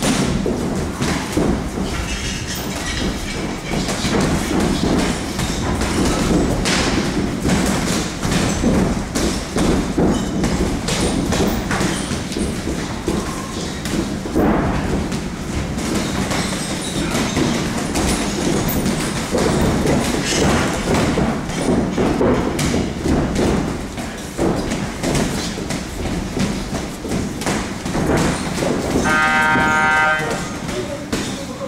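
Boxing gloves thudding against gloves and bodies during sparring, with feet shuffling on the ring canvas, a steady run of dull hits. About a second before the end an electronic round timer beeps, and the boxers then break off.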